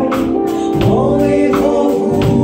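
Live band music: singing held over keyboard and guitars, with drums keeping a steady beat.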